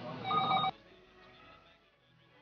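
A short electronic ringing tone of several steady pitches, about half a second long, that cuts off suddenly, leaving only a faint background.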